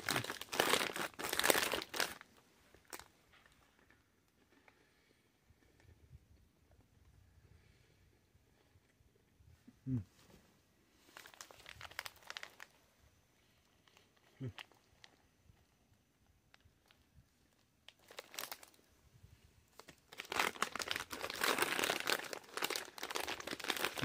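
Plastic snack bag of pretzel twists crinkling and tearing as it is opened, for about two seconds. After a quiet stretch with faint crunching of pretzels being chewed, the bag crinkles loudly again for the last several seconds as a hand digs into it.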